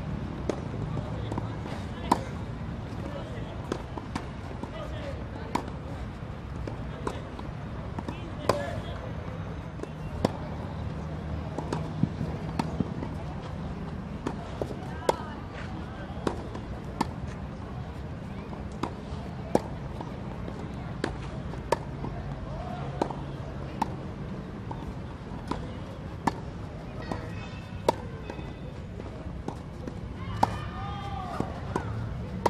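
Tennis ball being hit back and forth with rackets in a rally on a clay court: sharp hits about once every second or so, some louder and some fainter, over a steady low hum and distant voices.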